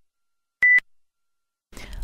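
A single short electronic beep, a steady high tone, about half a second in: the closing beep of an on-screen countdown timer, marking that time is up.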